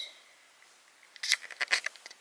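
Handling noise: a quick run of small clicks and taps, starting about a second in and lasting under a second.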